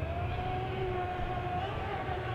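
Brushless electric motor of a HoBao Hyper MT Sport Plus RC monster truck whining at full throttle on a 6S battery. It is a thin tone that rises slowly in pitch as the truck accelerates, then drops away near the end.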